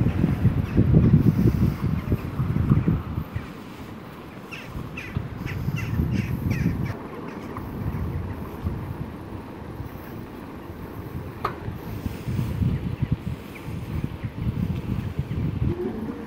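Wind buffeting the microphone of a camera carried on a moving bicycle, coming in uneven gusts that are strongest at the start and near the end. About four to seven seconds in, a bird gives a quick run of about eight short calls, and near twelve seconds there is a single brief rising squeak.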